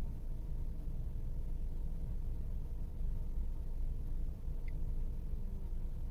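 Steady low background rumble inside the van's cab, with the engine not running, and one faint tick near the end.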